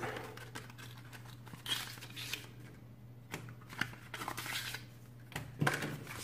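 Paper leaflets and a small cardboard packet being handled: soft rustling and a few light clicks and taps as the papers are slid out and laid down.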